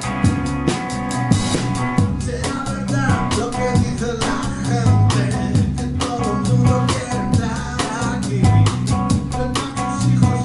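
A small band plays live: a drum kit keeps a busy beat on cymbals, snare and bass drum under electric guitar. A held chord gives way to a bending melodic line about two seconds in.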